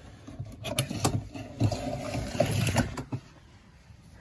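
Scraping, rustling and a few sharp knocks as a heavy extension cord is handled and pulled along.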